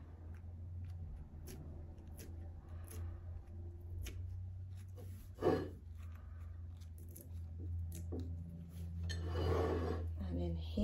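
Wet, glue-soaked decoupage paper being peeled and torn away from the edges of a glass dish, in small rustles and clicks. There is one louder short sound about halfway through and a longer rustling stretch near the end.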